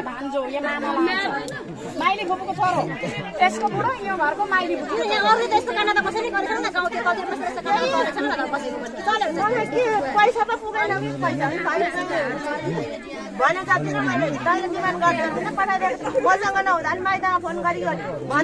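Several people talking at once, their voices overlapping in continuous chatter.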